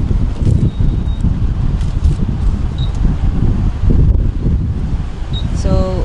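Wind buffeting the camera microphone, an irregular low rumble that goes on throughout, with a few faint short high beeps in between.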